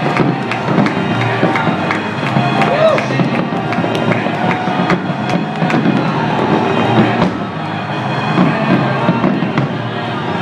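Fireworks bursting and crackling in quick succession over crowd chatter and cheering, with music playing throughout.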